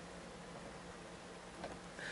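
Quiet room tone with a faint steady low hum and a soft brief sound about one and a half seconds in.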